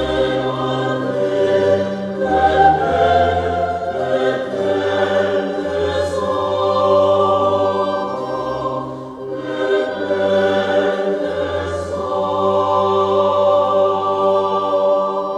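Mixed choir singing sustained chords of 17th-century Italian sacred music, with a brief break between phrases about nine seconds in.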